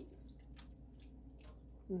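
Canned diced tomatoes being poured into a pot of soup: soft splashing and drips, with one sharp click just over half a second in.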